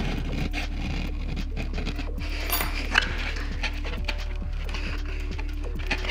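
Soft background music with light scraping and small clicks from a razor blade trimming along a foam-board aileron hinge line, and a sharper click about three seconds in.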